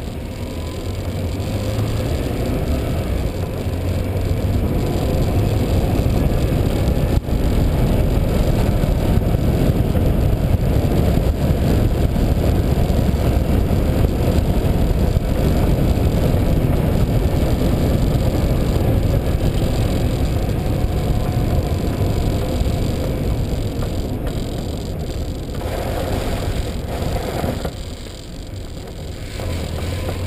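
Steady low rumble of road and wind noise on a moving camera travelling over rough asphalt, building over the first several seconds and dipping briefly near the end, with one sharp knock about seven seconds in.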